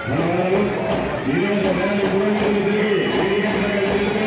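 A voice holding long sung or chanted notes, with a faint regular beat behind it.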